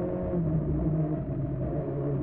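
Škoda rally car's engine heard from inside the cockpit, running at a fairly steady note that wavers and dips slightly in pitch as the car turns through a tight corner.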